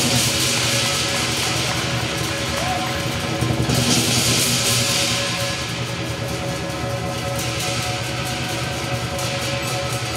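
Southern lion dance percussion ensemble of drum, gong and cymbals playing without pause, the cymbals clashing throughout.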